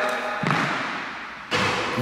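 A basketball shot in a gym. A single thud about half a second in fades away in the hall's echo. Near the end comes a sudden, noisier sound as the ball drops through the hoop's net.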